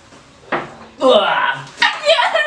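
Plates knocking and scraping on a tabletop as faces push around in them: a sharp knock about half a second in, a brief squealing scrape, then another knock near the end.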